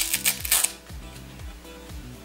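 A short burst of crisp rustling and crinkling in the first half-second or so as the headband wig is handled and opened out, then background music with a steady beat.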